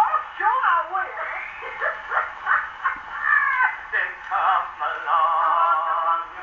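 Spoken comic dialogue from an early acoustic Edison Diamond Disc record, playing through a Victor III gramophone's horn. Voices are talking in character, with a wavering held vocal note about five seconds in.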